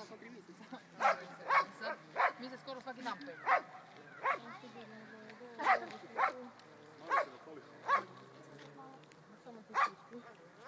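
A dog barking repeatedly: about a dozen short, sharp barks at uneven intervals, with a longer gap near the end.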